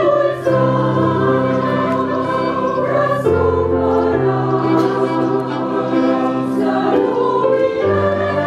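A group of mourners singing a slow funeral hymn together in Romanian, several voices in harmony holding long chords.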